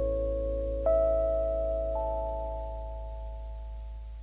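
Instrumental music from a pop ballad: held chords over a steady low bass note. New notes enter about a second in and again near two seconds, and the sound slowly fades.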